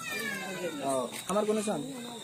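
People's voices, with a high-pitched cry that slides downward over about a second at the start.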